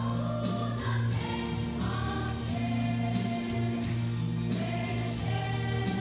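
A choir singing a gospel song over a steady instrumental backing with a sustained low bass line.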